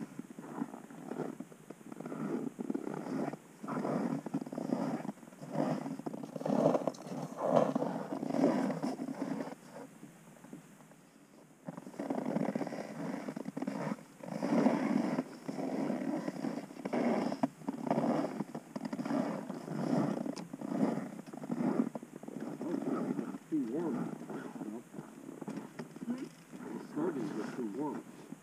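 Muffled talking, too unclear to make out, with a pause of a second or two partway through.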